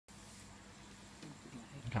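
Quiet background with a faint steady low hum and a thin, high steady whine. A man's voice begins right at the end.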